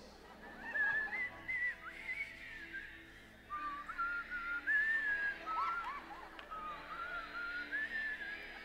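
Congregation whistling a fast song melody together, with many thin whistles overlapping. The whistling is faint and uneven, rising and falling in short phrases.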